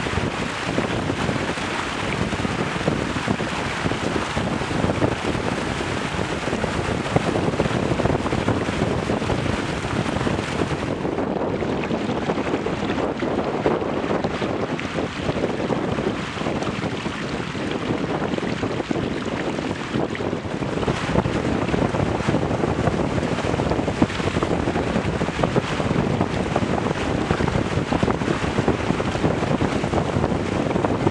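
Steady wind buffeting an action camera's microphone, with water rushing and splashing along the hulls of a Weta trimaran sailing at speed.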